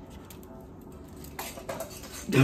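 Quiet room with a faint low hum, then a woman's short soft laugh near the end.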